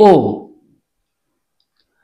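A voice saying the Hindi vowel 'o' once, briefly at the start, then near silence.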